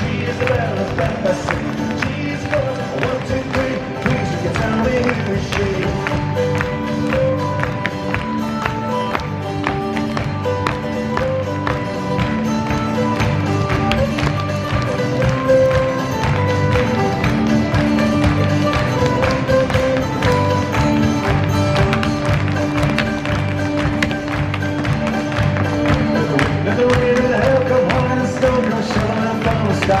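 A lively Irish dance tune with a steady beat, with dancers' hard shoes striking the stage in quick rhythmic taps throughout.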